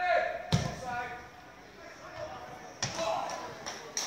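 A football kicked hard on a free kick: one sharp thud about half a second in. Near three seconds there is a second thud with players shouting.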